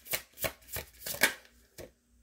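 A tarot deck being shuffled by hand: a quick run of card snaps, about six a second, loudest about a second in and dying away soon after, with one last snap near the end.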